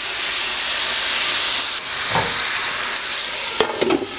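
Strip steak sizzling on the oiled hot surface of an electric grill pan. The sizzle starts at once as the meat goes down and holds steady. Near the end a few clinks come as the glass lid is set on.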